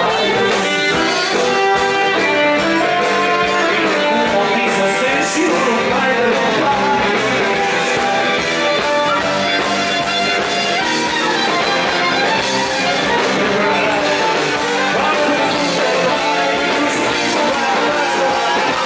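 Live Occitan folk dance music played by a band, loud and steady, with plucked strings carrying the tune.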